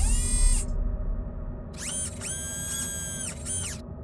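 Logo intro sound effects over a low steady drone: a short electronic sweep falling in pitch at the start, then about two seconds of a whirring, motor-like tone that rises, holds steady and winds down.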